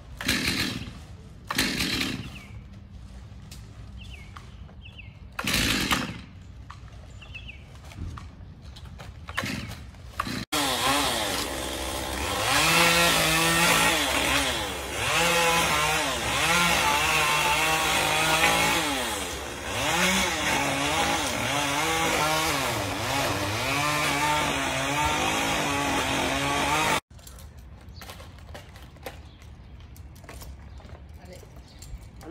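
Chainsaw cutting a palm tree, its engine revving up and down over and over as it bites and eases off. It starts suddenly about a third of the way in and cuts off suddenly near the end. Before it there are only a few short, louder noises over a quiet background.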